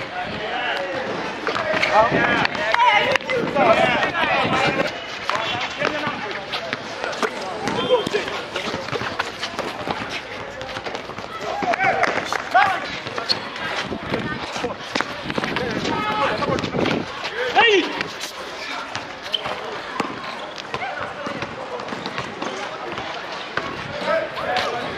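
A basketball game on an outdoor concrete court: the ball bouncing repeatedly and players' feet on the court, with players' voices calling out at intervals.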